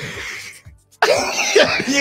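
A man's hoarse, coughing laughter in two bursts: a short one that fades out, then after a brief pause a louder one about a second in.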